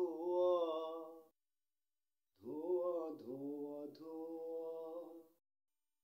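A man singing unaccompanied, holding long notes with slow glides in pitch, in two phrases. The first phrase ends about a second in, and the second starts a little later and stops short before the end. Dead silence follows each phrase.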